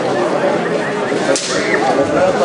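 Spectators chattering in the stands, with one sharp crack about one and a half seconds in.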